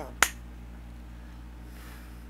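A single sharp snap made with the hands, then a steady low room hum.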